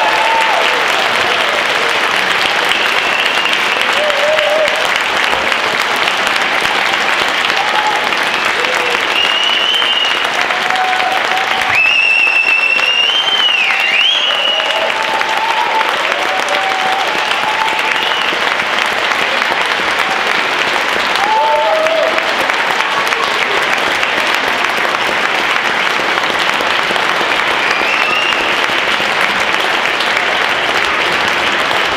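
Audience applauding steadily, with scattered voices and cheers. A high whistle rings out for about two seconds, twelve seconds in.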